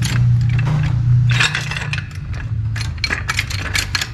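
Small hydraulic trolley jack being pushed along a plywood board under a car: a run of light clicks, clinks and scrapes from its metal body, handle and small wheels, over a steady low hum.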